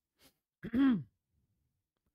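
A man clearing his throat once, a short pitched 'ahem' that rises and falls, his voice hoarse from long talking.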